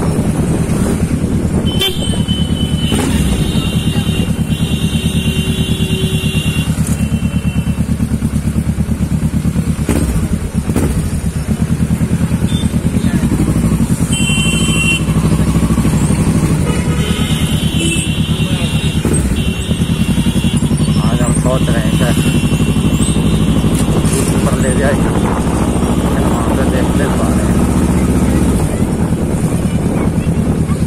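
Kawasaki Ninja 650R's parallel-twin engine running steadily at low speed in traffic, heard from on the bike. Vehicle horns honk several times over it, once about two seconds in and again around the middle.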